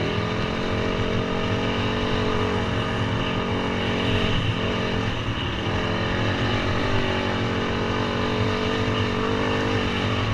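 Dirt bike engine running steadily while riding along a dirt trail, with a short dip in engine speed about halfway through before it picks back up.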